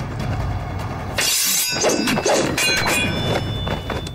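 A sudden loud crash, something breaking, about a second in, followed by a few high ringing tones that die away near the end.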